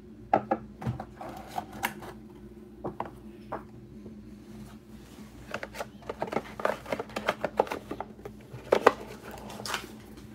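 Hands handling a cardboard trading-card box and its packaging: an irregular string of light taps, clicks and scrapes, busiest in the second half, with a couple of sharper knocks near the end.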